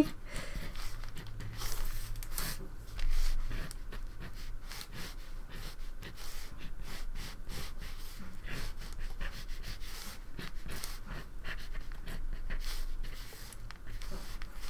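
Red pencil scratching on paper in quick, rough sketching strokes: a steady run of short scratches.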